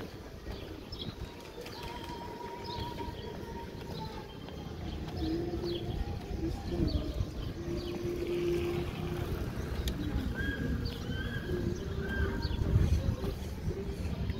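Small birds chirping in short, repeated high calls, with a few longer held notes in the middle, over a steady low rumble of background noise.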